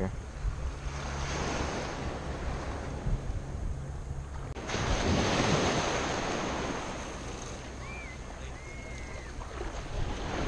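Wind rumbling on the microphone, then, after a sudden change about halfway, small waves washing along the shore at the water's edge, loudest just after the change and easing off.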